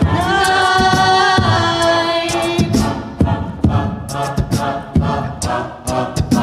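A cappella group singing with mixed voices: a chord held for the first couple of seconds, then a rhythmic passage with sharp vocal-percussion hits from a beatboxer under the harmonies.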